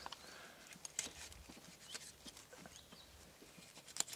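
Knife trimming a small square wooden peg: faint scrapes and small clicks of the blade cutting wood, one sharper tick about a second in.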